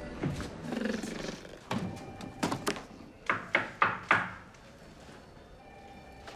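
A quick run of about ten sharp knocks over two and a half seconds; the last four, a quarter second apart, are the loudest.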